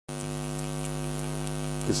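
Steady electrical hum with a stack of evenly spaced overtones, unchanging in pitch and level, picked up on the recording.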